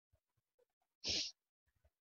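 A single short breathy noise from a person, lasting about a third of a second, about a second in; otherwise near silence.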